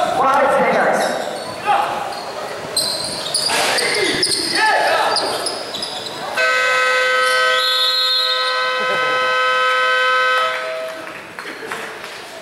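Basketball game horn sounding one steady, multi-pitched blast for about four seconds, starting about halfway through. Before it, players shout and the ball and shoes sound on the court in a large, echoing gym.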